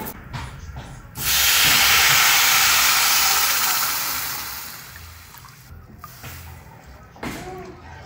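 Water poured into a hot pot of rice on a gas stove: a loud sizzling hiss starts suddenly about a second in and slowly dies away over the next few seconds. A wooden spoon stirs and scrapes the rice just before.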